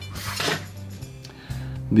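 Soft background music with a steady low bass note, and a brief rustle of hands handling a leather-and-aluminium wallet a moment after it starts.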